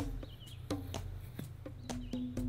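A few light clicks and scrapes of a heavy square glass case gin bottle being handled and wiped clean of dirt with a gloved hand, with a faint bird chirp early on.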